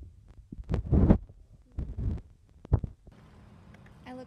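Low thumps and rustling in three bursts, the loudest about a second in and a sharper knock near three seconds: handling noise from a hand-held phone's microphone.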